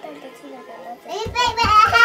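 A young child's high-pitched voice, excited wordless vocalising that starts just over a second in, with several low thumps underneath.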